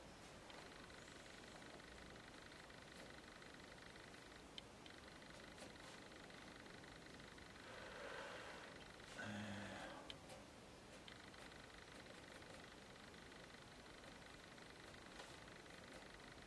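Near silence: faint room hiss, with soft scratching of a wooden stylus drawing ink lines on paper, swelling twice around the middle, and a few faint ticks.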